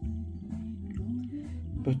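Music played back from a CD on a modified Arcam Alpha CD player through a hi-fi system, heard in the room, with bass notes changing about every half second and a faint melody above them.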